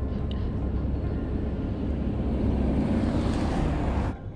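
A motor vehicle's engine rumbling past on the street, swelling louder toward the end before the sound cuts off suddenly.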